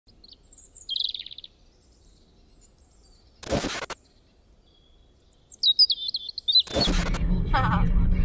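Small birds chirping: a short chirp about a second in and a quick run of falling chirps past the middle. Two short bursts of noise break in, one near the middle and one just before the end, and a steady low rumble from inside a moving car starts near the end.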